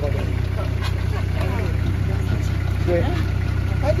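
A nearby 4x4 engine idling steadily, a low even hum, with brief voices over it.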